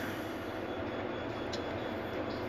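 Steady low background hiss of a quiet room, with one faint click about one and a half seconds in.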